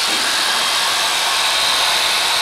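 Sure-Clip electric horse clippers running steadily against a horse's coat: a constant buzz with a high whine.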